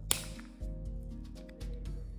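Scissors snip through the end of a nylon zip tie once, a single sharp snap about a tenth of a second in, over background music.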